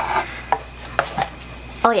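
Cosmetic packaging being handled: a brief rustle, then three sharp clicks or taps as small beauty products are picked up and knocked together.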